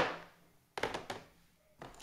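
Hard plastic CGC comic grading slabs knocking as they are handled: a short cluster of light clacks and thunks about a second in.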